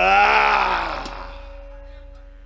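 A man's long, drawn-out vocal cry in a puppet character's voice, its pitch arching up and then down before it fades away about halfway through. It is the dalang voicing a wayang golek character. A faint steady hum and a held tone continue underneath.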